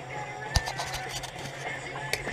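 Rock music playing faintly from a boat radio under a steady low hum, with one sharp knock about half a second in.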